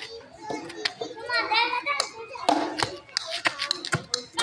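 Young children's voices calling out during a game of backyard cricket, with several sharp knocks. The loudest knock, just before the end, is a plastic bat striking a rubber ball.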